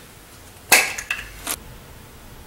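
One sharp knock followed by two lighter clicks from handling a small tool at a car's front fender during dent repair.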